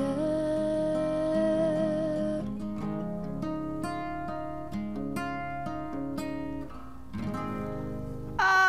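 Acoustic guitar played solo at the end of a song, with a wordless held sung note over it for the first couple of seconds. After that, single picked guitar notes ring out and thin away, fading about a second before the end.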